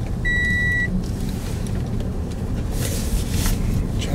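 Steady low rumble of a car heard from inside the cabin, with one high electronic beep lasting about half a second near the start and a short hissing rustle about three seconds in.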